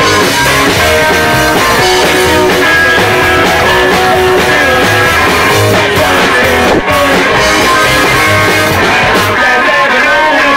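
A live psychobilly band kicks straight into a song at full volume, with electric guitar, drums and a lead vocal.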